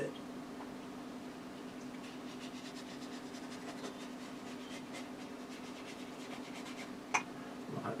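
Faint scratching and dabbing of a watercolour brush on paper over a steady low hum, with a single sharp click about seven seconds in.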